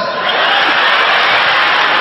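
Live audience applauding and cheering: a steady, loud wash of crowd noise.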